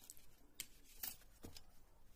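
Faint handling sounds of a plastic stencil and a pencil on card: a few short clicks and scrapes as the stencil is set on the paper and traced around.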